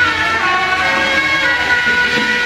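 Beiguan procession music: a suona (Chinese shawm) plays a loud, sustained melody, holding notes and sliding between them.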